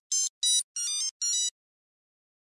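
Computer-style electronic bleeps: four short synthetic beep bursts, each stepping rapidly through several pitches, then they stop abruptly.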